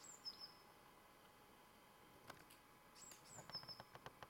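Faint high-pitched bird calls over near-silent woodland, heard twice: each is a quick falling note followed by a brief level whistle. A few faint clicks come near the end.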